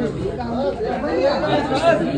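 Several people talking over one another, a woman's voice among them, with no other clear sound.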